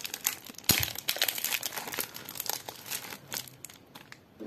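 A soap bar's wrapper being torn open and crumpled off by hand: a dense run of crinkling and tearing crackles, sharpest a little under a second in and thinning out near the end.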